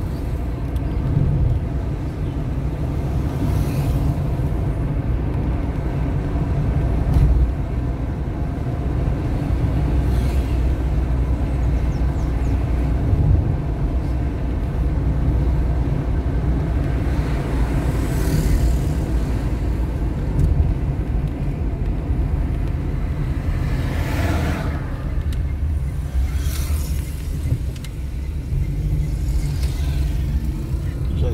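Moving car heard from inside the cabin: a steady low rumble of engine and road noise, with a few brief swells of louder noise from passing traffic.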